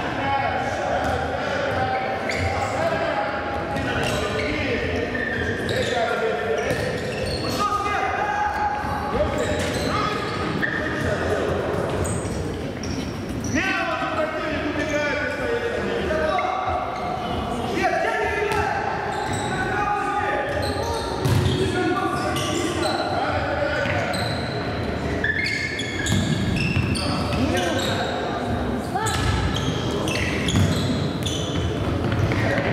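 Youth futsal game in a sports hall: voices calling out over each other, with the ball being kicked and bouncing on the wooden floor, the sounds echoing in the hall.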